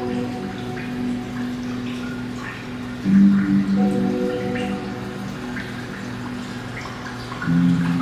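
Slow background music of sustained low chords that change about every four seconds, over water dripping and splashing into the aquarium tank from its inflow pipe.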